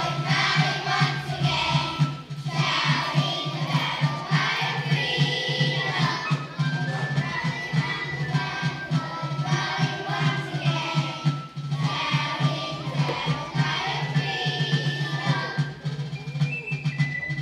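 Elementary-school children's choir singing a song with instrumental accompaniment, a steady beat running underneath.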